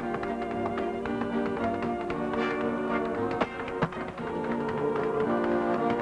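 Band music with held chords, with a dancer's shoes tapping and striking the stage floor in quick sharp clicks throughout.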